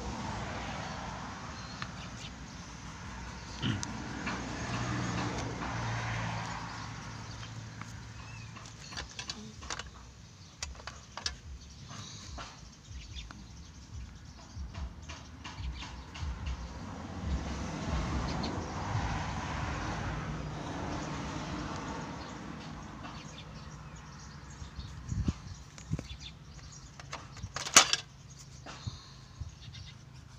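Coloured pencil scratching and tapping on notebook paper in many short strokes, with a sharp click near the end. Two slow swells of background sound rise and fade beneath it.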